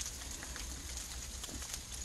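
Quiet outdoor background: a faint, even hiss with a steady low rumble and a couple of faint ticks.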